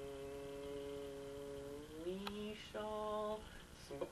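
A man's voice chanting the intoned words of a pentagram ritual on one long held note; about two seconds in the pitch slides up and breaks off, followed by a shorter held note.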